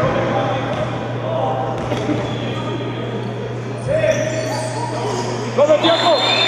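Live sound of an indoor basketball game: scattered voices and shouts from players and spectators, with a ball bouncing on the court, over a steady low electrical hum.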